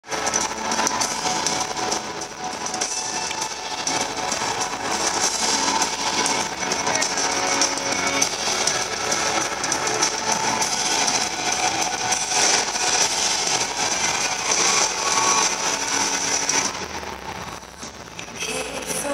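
Live band music in a large arena, recorded from the audience: a dense, loud intro with held keyboard tones, dropping away shortly before the end.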